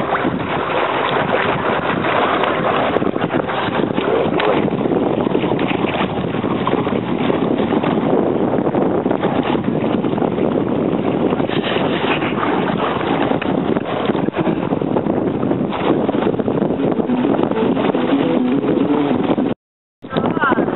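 A boat under way on choppy water: a steady rush of wind on the microphone mixed with water noise. It cuts out suddenly just before the end.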